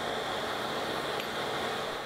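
Drill press running with a large countersink bit cutting chamfered holes into a wooden board, a steady even whir.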